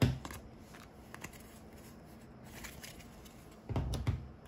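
Trading cards being handled by hand: faint scattered clicks and rustles as they slide against each other. A sharp click comes at the very start and a louder low knock near the end, as the cards are set down on the playmat.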